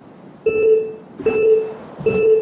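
Electronic countdown beeps: two short, identical low-pitched beeps about three-quarters of a second apart, each lasting about a third of a second, with a thin bright overtone above.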